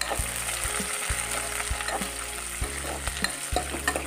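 Sliced onions sizzling in hot mustard oil in a steel kadai with whole spices, stirred with a metal spatula that scrapes and taps against the pan roughly twice a second.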